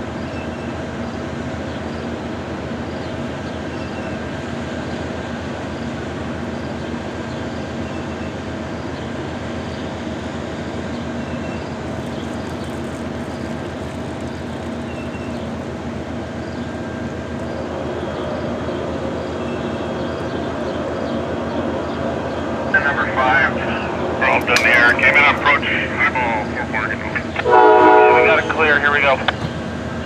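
Standing Amtrak passenger train's P42DC diesel locomotives idling with a steady hum. Voices rise over it in the last several seconds.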